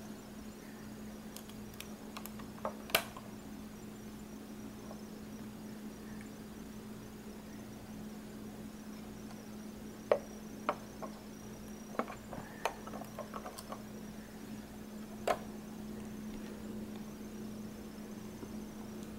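Scattered light clicks and taps of a hand touching and handling plastic Lego bricks, a few near the start, a cluster about ten seconds in and one more a few seconds later, over a steady low hum.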